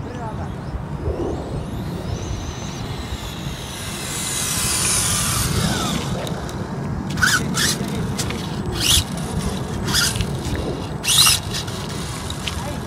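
An electric RC drag car (Tamiya FF03 chassis) runs its motor and gears with a high whine that rises and then falls away in pitch as it makes a short, weak pull on a dying battery. In the second half come several short, sharp honking calls.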